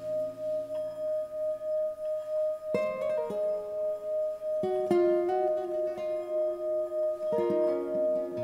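Instrumental music: a ringing tone held on one pitch, pulsing steadily like a singing bowl, under a nylon-string guitar that plucks new notes and chords about three times.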